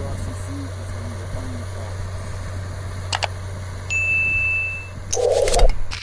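Engine of a rotary snow blower vehicle running with a steady low drone while it clears snow, with faint voices in the first couple of seconds. A high steady tone comes in about four seconds in, and a loud short burst of noise follows near the end.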